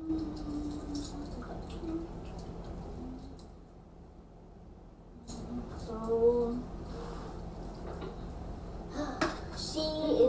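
Children's voices making short, wordless pitched sounds in a small room: a wavering held note at the start, a quieter gap about three to five seconds in, another brief voiced sound about six seconds in, and more near the end, over a faint steady low hum.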